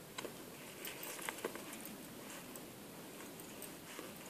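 Faint rustling and light clicking in dry leaf litter as it is stirred by boots and the trapped fisher held on a release pole, with a few sharp clicks near the start and again about a second in.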